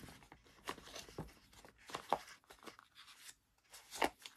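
Faint, scattered light clicks and rustles of oil pastel sticks being pushed about in their tray and the box being handled.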